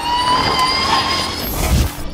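Formula E electric race car's drivetrain whine, a high tone rising slowly in pitch as it accelerates, then fading. A short low rumble near the end.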